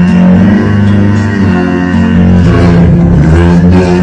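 Music with held bass notes and plucked-string instruments; the bass notes change about two and a half seconds in.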